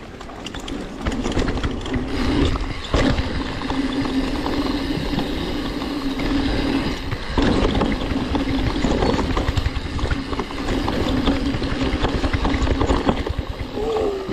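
Mountain bike rolling down a dirt forest trail, its rear freehub buzzing steadily while coasting, with brief breaks about three and seven seconds in. Wind rush on the camera microphone and knocks and rattle from the bike over the ground run underneath.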